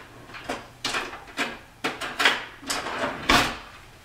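A utensil scraping and knocking against a saucepan in irregular strokes, about two a second, as flour is stirred into melted butter to make a roux.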